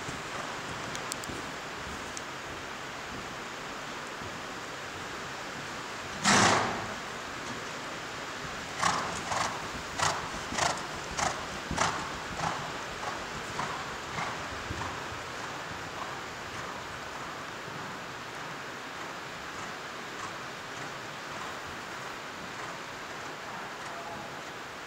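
Steady hiss of rain pouring on a riding hall's tin roof, with a cantering horse's hoofbeats on the sand arena floor. One loud short burst comes about six seconds in, then a run of thuds at about the canter's stride, under two a second, fading out after about fifteen seconds.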